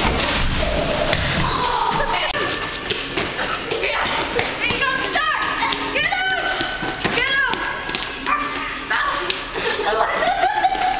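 Children's voices shouting as they run, with thumps and knocks from bodies and feet hitting the floor and seats. Several rising-and-falling yells come about halfway through.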